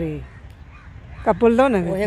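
A woman's voice in short utterances: one trailing off just after the start, then, after a quieter pause, another beginning a little past the middle and running into speech.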